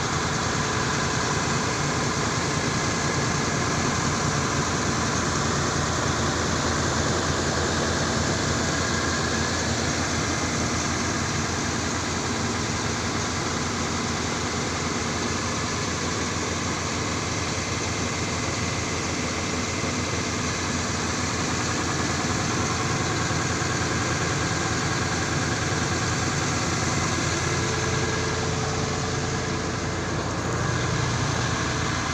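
Truck's diesel engine idling steadily, an even running sound that holds unchanged throughout.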